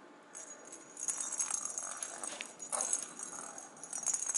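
Bell inside a hollow plastic cat toy ball jingling and rattling unevenly as a kitten bats it and it rolls across a tiled floor, getting louder about a second in.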